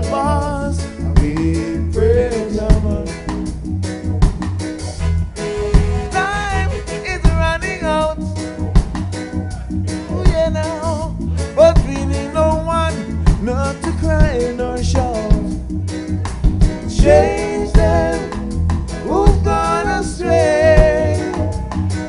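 Live reggae band playing: a male lead singer's melody over a steady, loud bass-and-drum groove.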